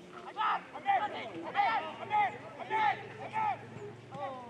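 Footballers' voices shouting on the pitch during an attack on goal: about six short calls, each rising and falling in pitch, roughly every half second. A faint steady low hum runs underneath from about a second in.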